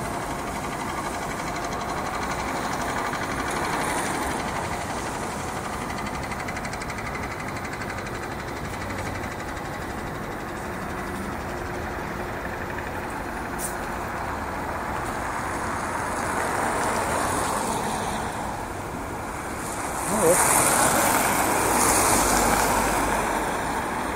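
Steady street traffic noise from a multi-lane road, with a louder vehicle pass near the end.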